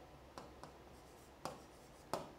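Faint scratching and a few light taps of a pen writing on a chart display board; the clearest tap comes about one and a half seconds in.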